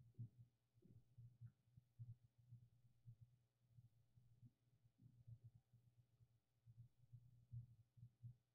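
Near silence: faint room tone with irregular soft, low thumps.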